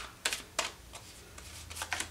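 Tarot cards being handled and shuffled: a handful of short, sharp card clicks and taps spread through the two seconds.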